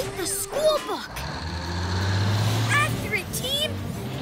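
A truck's engine hum coming in about a second in and growing louder as the truck approaches. Short chirpy robot voices are heard at the start and again around three seconds.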